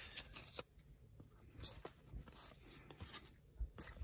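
Cardboard trading cards being slid one at a time off a hand-held stack: faint scattered flicks and rubs of card stock, about half a dozen in a few seconds.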